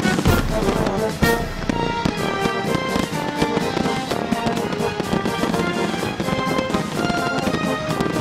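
Music with a melody of held notes, mixed with fireworks bursting overhead; the sharpest bangs, with a deep boom, come in the first second or so.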